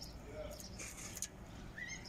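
Quiet outdoor background with a faint, short rising bird call near the end.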